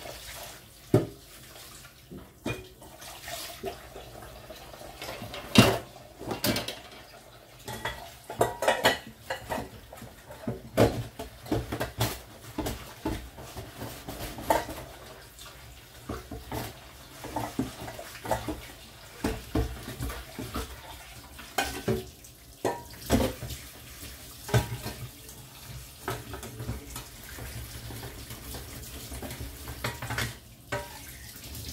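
Dishes and cutlery being washed by hand in a kitchen sink: irregular clinks and knocks of crockery and metal throughout, the loudest about five and a half seconds in, over water running from the tap.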